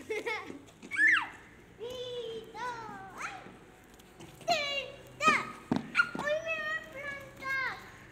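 Young children calling out and exclaiming in short, high-pitched bursts of wordless voice, with a couple of sharp clicks a little past halfway.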